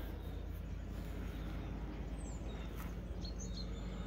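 Quiet outdoor ambience: a steady low background noise with a few faint, short, high bird chirps scattered through.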